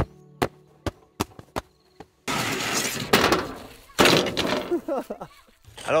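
Background music with a ticking beat stops about two seconds in. It gives way to loud, noisy clattering as the dusty rear tailgate of a Volvo 240 estate is lifted open. The clattering comes in two long stretches.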